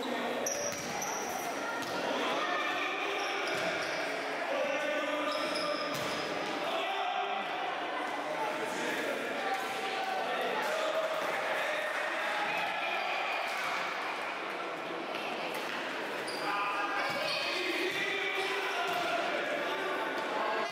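Futsal ball being kicked and bouncing on a hard indoor court floor now and then, under continuous shouts and calls from players and spectators that echo around the sports hall.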